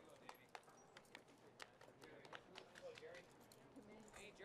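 Very faint, irregular clops of a thoroughbred horse's hooves stepping on pavement, with faint voices in the background.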